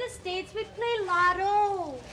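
A woman's high-pitched voice in a string of long, drawn-out syllables that glide up and down in pitch.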